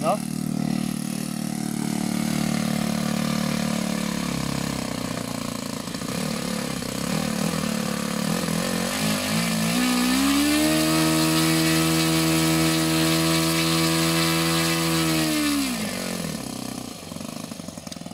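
Saito FA-72 four-stroke model-airplane glow engine running with its propeller, first at low speed, then throttled up about ten seconds in to a steady high speed that holds for about five seconds before it is throttled back down.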